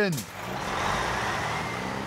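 A fire engine's engine running as it drives away: a steady low engine note under a rushing noise that swells for about a second, then slowly fades.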